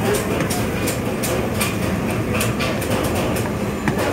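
Charcoal fire under a wire grilling basket of whole tuna, crackling with sharp irregular pops several times a second over a steady low rumble.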